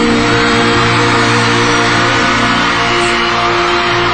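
A live band's closing chords held steady under a studio audience cheering and applauding, the vocal line having just ended.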